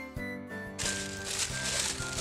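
Tissue paper crinkling as a small wrapped gift is opened, starting about a second in, over soft background music with held notes.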